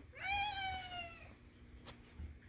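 A domestic cat meowing once: a single call of just over a second that rises quickly in pitch and then slowly falls.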